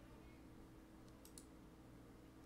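Near silence: faint room tone with a few quiet computer mouse clicks about a second and a quarter in, as the video's progress bar is clicked to skip ahead.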